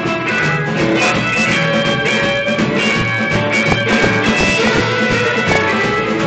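Live rockabilly band playing an instrumental passage: electric guitar and strummed acoustic guitar over upright bass and a drum kit, with a steady beat.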